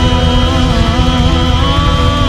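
Live pop band playing, with a male lead singer holding a long sung note that wavers slightly and moves up about one and a half seconds in, over a steady bass and drum pulse.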